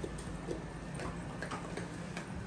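Dogs' claws clicking on a wooden floor as they walk, a few scattered irregular ticks.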